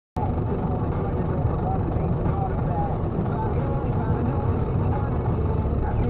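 Steady road and engine noise inside a moving car, as recorded by a dashboard camera, with faint voices underneath.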